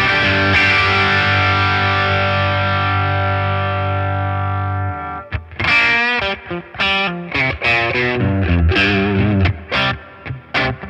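Fender Player Plus Nashville Telecaster played through a Boss Katana amp with heavy distortion. One chord is struck and left ringing for about five seconds, then a quick riff of picked notes and short chord stabs follows.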